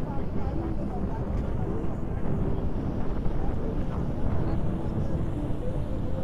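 Steady low rumble of motorboat engines on a river, with churning water and a faint murmur of voices.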